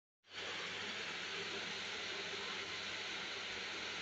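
Steady hiss with a faint low hum underneath, unchanging throughout, starting just after the opening instant: room noise.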